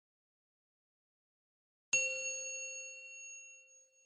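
A single bright bell-like chime, struck about two seconds in and ringing out as it fades over about two seconds: the sound effect of a channel logo intro.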